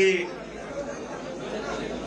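A man's voice ends a word through a microphone, then a pause with low background chatter and room noise.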